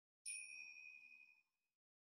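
A single bright bell-like ding, sounding once about a quarter of a second in and ringing out for about a second and a half as it fades.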